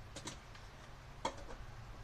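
Small metal nuts and bolts clicking against each other in a dish as they are picked through by hand: a few light clicks, the loudest just past halfway.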